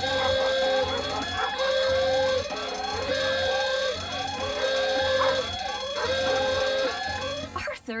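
Home burglar alarm siren going off by itself with nobody setting it off. It repeats a cycle of a steady held tone followed by a run of short rising whoops about every second and a half, then cuts off shortly before the end.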